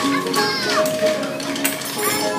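A group of young children performing a song, with held musical notes, children's voices and light, frequent strokes of hand percussion.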